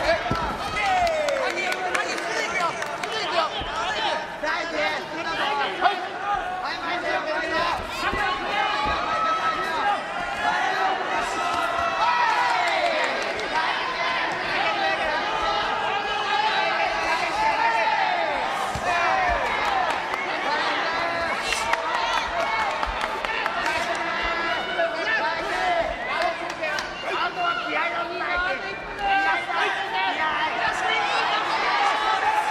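Many voices shouting over one another throughout: the crowd and cornermen yelling during a kickboxing bout. Sharp smacks of kicks and punches landing cut through now and then.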